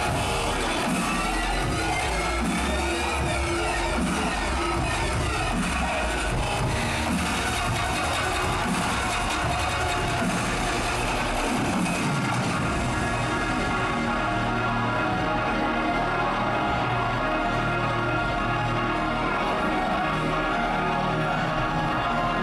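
Electronic dance music playing loud over a hall's sound system. About halfway through the mix changes and the high end drops away.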